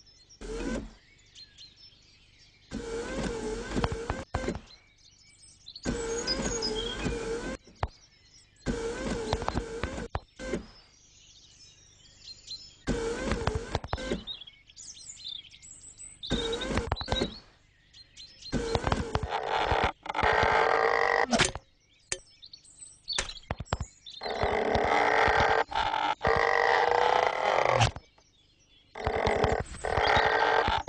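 Cartoon sound effects with light music: a short comic sound with a wobbling pitch, repeated several times with quiet gaps between. In the last third it gives way to longer, louder, denser bouts of effects as the sticky caterpillar stretches.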